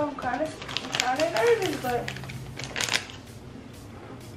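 A person's voice gliding up and down without words for about two seconds, then a few sharp clicks and taps near the end.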